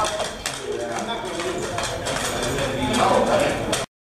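Several people talking over a run of scattered hard clacks and knocks; the sound cuts off abruptly near the end.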